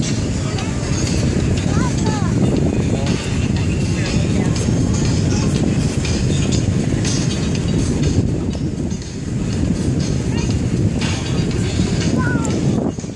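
Wind buffeting a phone microphone on a beach, a loud, rough rumble that rises and falls, with faint voices now and then.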